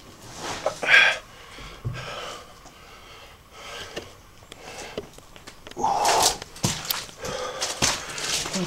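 A man breathing heavily, out of breath from climbing. There is a loud breath about a second in and a longer, louder one around six seconds in, with quieter breaths between.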